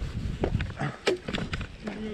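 Irregular scuffs, knocks and fabric rubbing close to a chest-mounted camera as a person clambers onto a fallen log and settles astride it.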